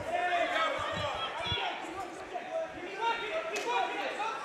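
Voices calling out from around the cage over a fighters' clinch, with several dull thuds in the first second and a half from bodies and strikes in the clinch.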